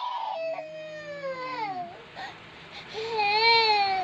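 A baby crying: a long falling wail, then a second wail starting near three seconds in.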